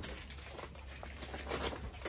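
Handling noise: soft rustling and a few light knocks as a wooden-framed wire-mesh soil sieve is picked up and lifted into place.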